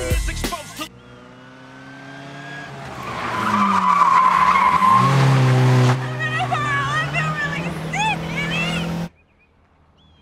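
Car engine revving up and tyres squealing in a skid, loudest in the middle. The engine keeps running under brief vocal sounds, then the sound cuts off abruptly near the end.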